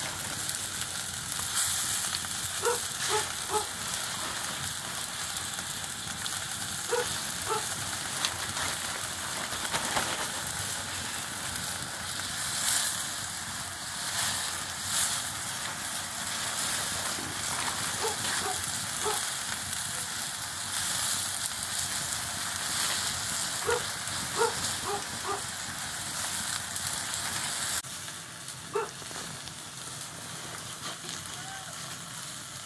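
Open wood fire crackling under a wok of nettle leaves that sizzle in the heat: a steady hiss with scattered sharp pops. Brief clusters of short high chirps come through a few times, and the sound drops a little in level near the end.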